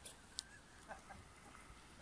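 Near silence, a faint outdoor background, with one brief sharp click about half a second in and a few faint short tones.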